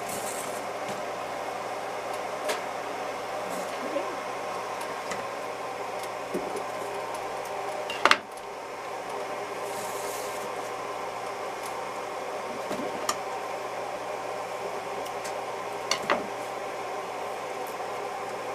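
Steady room hum with light handling of cotton candle wick. About eight seconds in there is one sharp snip, typical of scissors cutting the wick.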